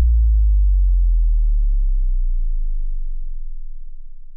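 Tail of an outro sting: a deep bass boom that slowly fades away, its fainter upper tones dying out about halfway through.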